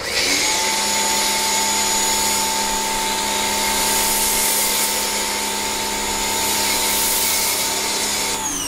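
Pressure washer running and spraying through a Harbor Freight foam cannon with its knob set a quarter turn from tight for thicker foam: a steady motor whine over the hiss of the spray.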